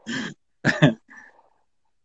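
A man clearing his throat in a few short, raspy bursts within the first second.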